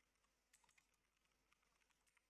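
Very faint computer keyboard typing: a handful of scattered keystrokes, with a quick cluster about half a second in.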